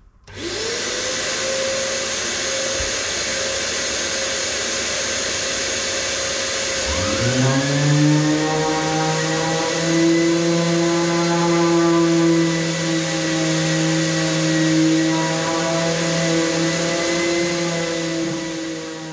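A shop vacuum switched on about half a second in, its motor rising to a steady whine over a rush of air. About seven seconds in a Makita random orbital sander on its hose spins up and runs alongside it, sanding plywood to take off burrs and excess glue.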